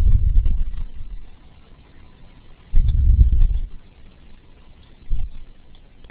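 Low, muffled rumbling in three bursts: a long one at the start, another about three seconds in, and a short one near the end.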